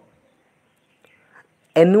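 A pause in a man's speech: near silence with only a faint trace of sound, then his voice starts again near the end.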